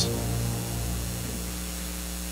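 Soft held keyboard chord fading away over about a second and a half, leaving a steady hum and hiss.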